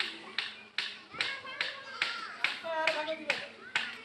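Sharp knocks of a tool on brick, evenly spaced at about two or three a second, from bricklaying work, with voices talking in the background.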